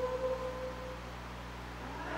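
A congregation's hymn singing tailing off on a held note, then a brief lull with only a faint steady hum in the room.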